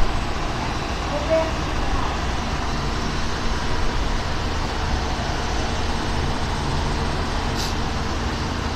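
Steady hiss of small hail and rain falling, over a low rumble from idling emergency vehicles and traffic.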